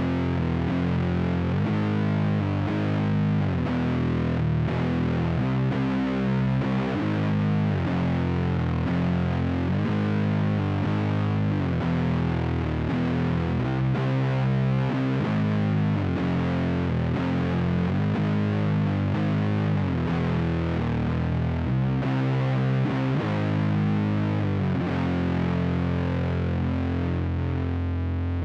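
Heavily distorted electric guitar tuned to C standard playing a slow, low doom metal riff. Notes ring out and change every second or two, with slides between them rather than direct picking.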